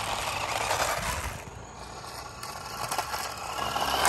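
Remote-control Mario Kart toy car driving over rough asphalt: a rushing noise from its small tyres and electric motor, loudest in the first second and a half and building again near the end.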